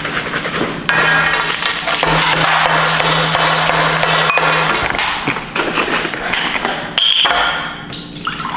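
Background music, with a few sharp clicks.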